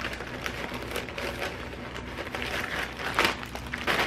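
Plastic bag of shredded coleslaw crinkling and rustling as a hand pushes a paper towel down inside it, with a louder crinkle about three seconds in.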